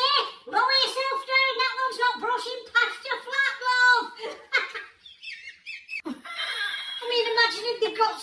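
A high-pitched voice talking and laughing, with a short break about five seconds in.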